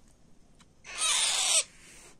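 A baby parrot's harsh, rasping call, once, lasting under a second, starting a little under a second in.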